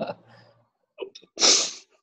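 A person sneezing: a short catch of breath, then one sharp, hissy burst about a second and a half in.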